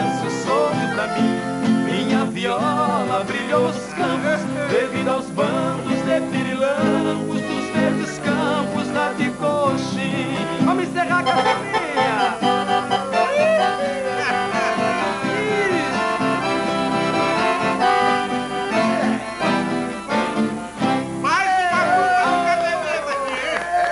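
Acoustic guitars strummed and picked with an accordion, playing the instrumental part of a live música sertaneja song.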